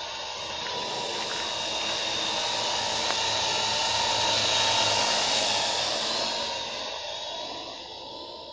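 Parrot AR.Drone quadcopter's four electric motors and propellers whining steadily in flight. The whine swells as the drone comes close, loudest about halfway through, then fades as it moves away.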